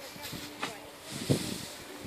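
Dry straw rustling as a pitchfork lifts and tosses it, with one louder rustle and thud about a second and a quarter in.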